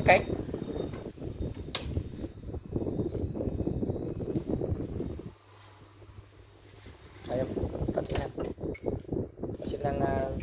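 Airflow from a vintage cast-iron pedestal fan buffeting the phone microphone as a rough, uneven rumble. It drops away for about two seconds around the middle, leaving the fan motor's steady low hum.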